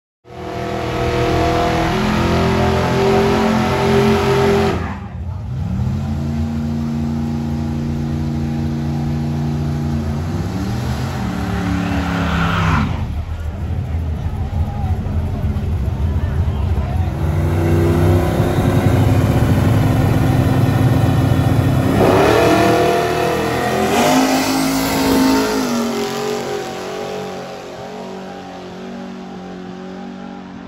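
Drag-racing cars' engines revving and running loud, mostly at held pitches, with a rise and fall in pitch about ten to thirteen seconds in and another climb a little after twenty seconds, over crowd voices. The sound breaks off abruptly several times.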